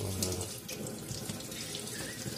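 Water from a kitchen tap pouring onto the aluminium lid of a pressure cooker in a steel sink, a steady splashing.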